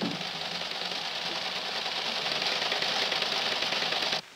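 Teletypewriter terminal printing: a dense, rapid mechanical clatter that grows slightly louder.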